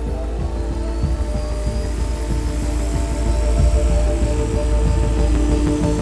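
Film sound effect of a homemade machine powering up: a deep, heavy rumbling hum with a faint rising whine, swelling over several seconds and easing near the end, under a droning film score.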